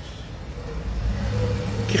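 A motor vehicle's engine hum and road noise, growing gradually louder as it approaches.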